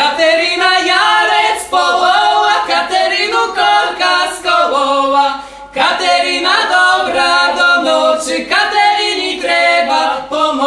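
A Lemko folk song sung a cappella by a trio, a man's voice and two women's voices together, in sung phrases with brief breaks between them.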